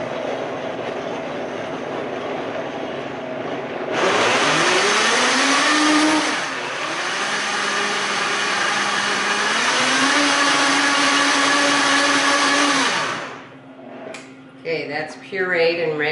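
Countertop blender pureeing bananas with lemon juice, sugar, water and salt. It runs steadily at a lower speed, jumps to high speed about four seconds in with a rising whine as it spins up, dips briefly, runs on at high speed and cuts off a few seconds before the end.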